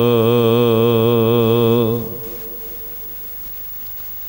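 A man's voice chanting a line of Gurbani, holding one long note with vibrato that ends about two seconds in, followed by quiet room tone.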